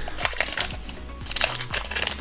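Trading card in a plastic sleeve handled close to the microphone: a few short crinkles and clicks, over quiet background music.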